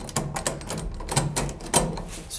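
A quick run of sharp clicks from a door's push-button keypad lock as a code is pressed in.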